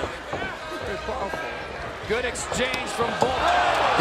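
Dull thuds of punches landing during a flurry in the cage, with faint shouting and crowd noise that swells near the end.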